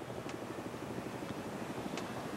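A faint, steady background drone of vehicle noise, with no distinct events.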